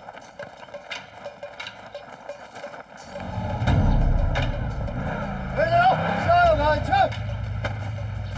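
Off-road side-by-side utility vehicle's engine rising loud about three seconds in as it drives through on gravel, then running on steadily. Voices call out over it midway.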